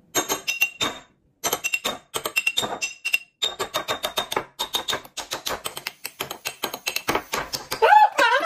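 A metal spoon tapping on the top of a glass beer bottle: dozens of quick clinks with a short glassy ring, in short runs at first and then in a fast steady patter, which sets the beer foaming up out of the neck. Near the end a man shouts as the foam rises.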